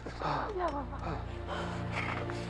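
Gasping, breathy vocal cries with falling pitch, several in the first second, over a low steady drone of film score.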